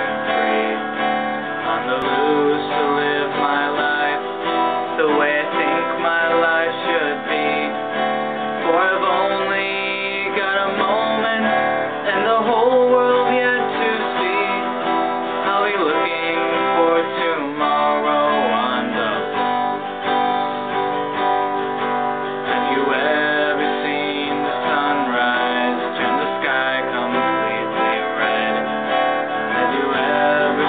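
Acoustic guitar strummed in a steady rhythm, with a male voice singing the song's verse and chorus over it.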